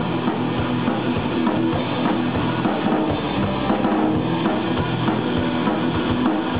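Rock band playing live: electric guitars over a drum kit with a steady kick-drum beat, in an instrumental passage without vocals.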